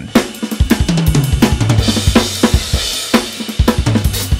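Drum kit with Soultone cymbals played in a fast groove: rapid kick and snare hits under hi-hat and crash cymbals. The cymbal wash grows thicker about halfway through.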